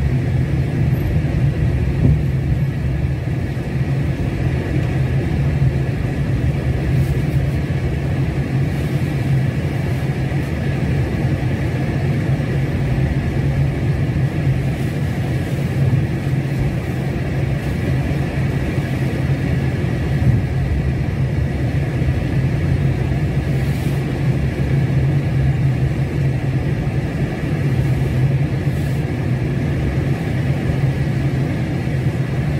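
Steady engine and road rumble of a car driving at an even pace through town streets, heard from inside the cabin.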